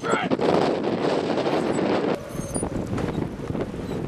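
Wind buffeting the microphone outdoors, a steady rushing noise that eases off a little past halfway.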